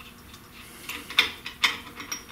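Loose axle nut being turned by hand on the threaded end of an MGB rear axle shaft: a few sharp metallic clicks, the loudest bunched between about one and one and a half seconds in.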